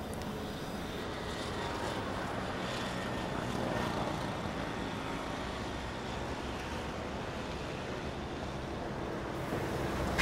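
Steady outdoor urban background noise: an even hum of distant traffic.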